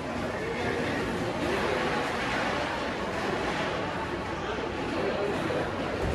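Stainless-steel elevator doors sliding shut, their closing blended into a steady wash of background noise and distant chatter with no distinct thud at the close.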